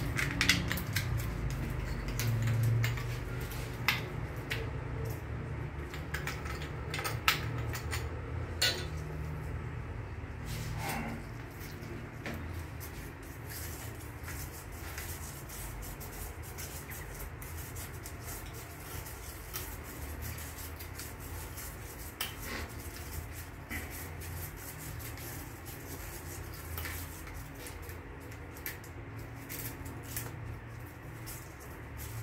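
Small hard object being handled in gloved hands: scattered sharp clicks and taps, several in the first nine seconds and fewer after, over a low steady rumble.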